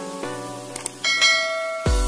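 Subscribe-button animation sound effects over music: a quick double click a little before a second in, then a bright notification-bell ding that rings on. Near the end a deep electronic kick drum drops in pitch as a beat starts.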